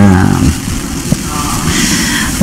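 A man's voice through a handheld microphone ends a phrase, then a short, quieter pause with faint voices and room noise.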